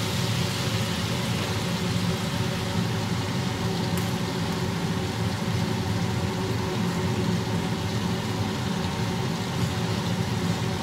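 Butter sizzling as it melts and foams in a frying pan, over a steady low hum.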